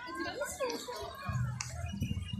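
Children's voices and people's chatter in the background, with pitched calls wavering up and down in the first second.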